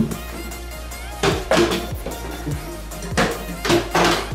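Electronic dance music with a steady kick-drum beat and sharp high hits.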